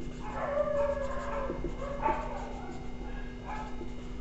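Marker pen writing on a whiteboard, under wavering high-pitched cries from an animal in the background, loudest in the first second and a half and again briefly about two seconds in.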